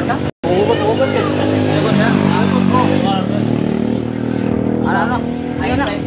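Voices talking over a small engine running steadily underneath. The whole sound drops out for a split second just after the start.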